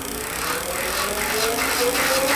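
Rear hub motor of a dual-motor fat-tire ebike spinning its raised rear wheel up on pedal assist five: a whine that climbs slowly in pitch. Faint regular ticks run with it, a rub that the rider traces to the fender.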